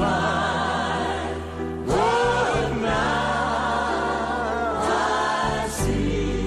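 Gospel choir music: voices singing long held chords in phrases, a new phrase entering about two seconds in, over a steady low accompaniment.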